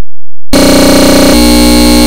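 Loud, distorted electronic buzzing tone with a dense stack of steady overtones, the cartoon's soundtrack warped by an audio effect. It starts about half a second in and changes pitch about two-thirds of the way through.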